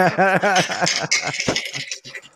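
Men laughing: a quick run of rhythmic "ha-ha" pulses in the first half second or so, trailing off into breathier laughter.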